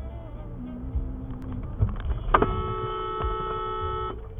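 Car horn sounded in one steady blast held for nearly two seconds, starting a little past halfway, over the low rumble of engine and road noise in the car's cabin.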